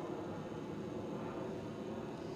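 Steady background hiss with no distinct event; the car's engine is not running.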